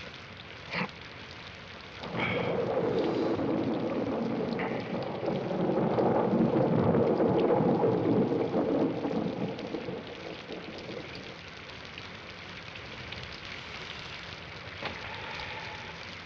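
Steady rain with a long roll of thunder. The thunder starts about two seconds in, swells, then dies away after about eight seconds, leaving the rain.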